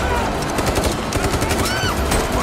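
Rapid automatic rifle fire, many shots in quick succession.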